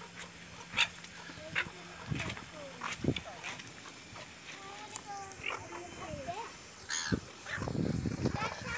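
Short, scattered animal calls with a few sharp clicks between them.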